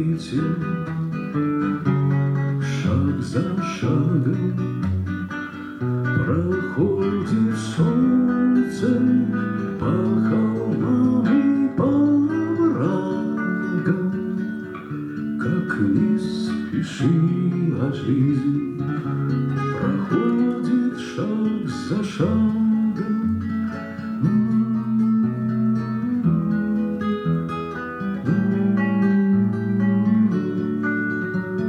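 Acoustic guitar played as song accompaniment, with a man singing over it.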